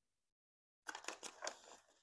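Disposable aluminium foil baking pans crinkling and ticking as they are handled, starting about a second in and lasting about a second.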